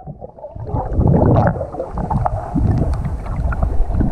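Muffled underwater water noise picked up by a submerged action camera: an uneven low rumbling and gurgling as water moves around the camera, with the high end dulled.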